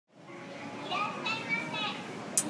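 Children's voices playing and calling, fading in from silence, with high-pitched calls over a murmur from about a second in.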